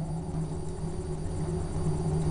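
Low, steady rumble with a steady hum beneath it, from the wood fire burning in a rocket heater's firebox.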